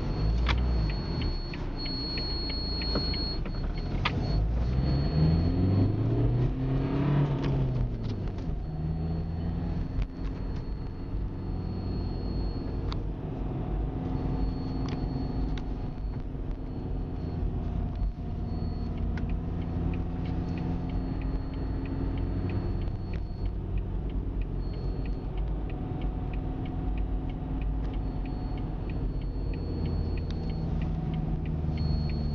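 Car engine running with steady road rumble. The engine note rises and then falls between about five and eight seconds in.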